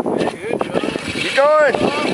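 A radio-controlled rock crawler working through a muddy water pit, its motor and churning water making a noisy, clicking bed. About a second and a half in, a spectator lets out a loud drawn-out exclamation that rises and falls in pitch.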